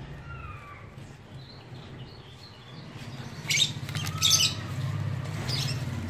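Small birds chirping outdoors: a few thin gliding calls at first, then louder rapid clusters of chirps starting about three and a half seconds in. A low steady hum runs underneath.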